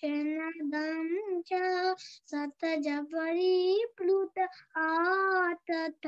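A child's voice singing Sanskrit verses unaccompanied, in held notes that rise and fall, with short breaths between phrases, heard over a conference call.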